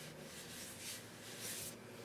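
Faint rubbing as a hand smooths a sticker down onto a board, with a couple of soft brushing strokes.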